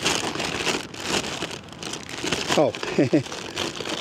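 A crinkly plastic gear bag being rummaged through by hand, rustling and crinkling without a break, with a short vocal "oh" a little past halfway.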